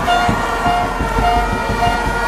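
Plastic fan horns blowing a short note over and over, about two blasts a second, with another horn holding a longer note, over a noisy crowd with scattered claps.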